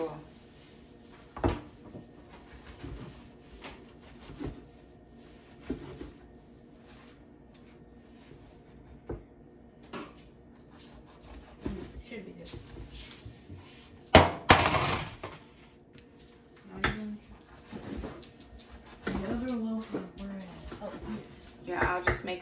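Kitchen knife cutting bread on a wooden cutting board: scattered soft knocks as the blade meets the board, with one louder noisy clatter lasting about a second partway through.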